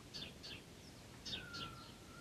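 Faint chirps of small birds: several short, quick descending chirps, some in pairs, and a longer thin falling note near the end.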